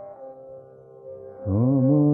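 Odia devotional song (bhajan) with accompaniment: for the first second and a half, between sung lines, an accompanying instrument holds a quiet steady note. About one and a half seconds in, the male singer comes back in, sliding up into the next line with a wavering pitch.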